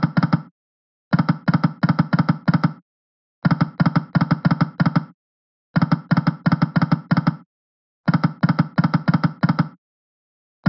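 Video slot game's reel-spin sound effect: a rapid run of clicking ticks lasting under two seconds, repeated about four times with short silent gaps between them. Each run is one spin of the reels, and no win chime follows any of them: all are losing spins.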